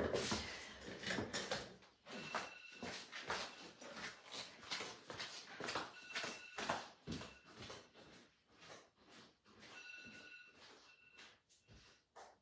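Footsteps, knocks and door-like thumps of someone moving away through a house, growing fainter. Short stretches of a high electronic alarm tone come through faintly a few times.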